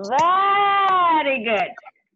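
A person's long drawn-out vocal cry, its pitch arching up and then falling away over about a second and a half.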